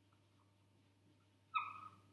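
A whiteboard marker squeaking against the board once, about one and a half seconds in: a short high squeal that dips slightly in pitch. Otherwise quiet room tone with a faint steady hum and a few soft ticks of the marker.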